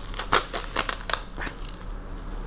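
Plastic wrapping and packing tape crinkling and crackling as a small soft taped bundle is squeezed and handled. The crackles come irregularly and ease off after about a second and a half.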